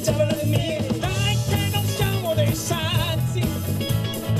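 Live rock band playing: electric guitars, bass guitar and drum kit together.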